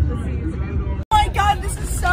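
Steady low rumble of a bus on the move, heard from inside, with voices talking over it. The sound cuts out abruptly for an instant about a second in, then louder, excited speech comes back.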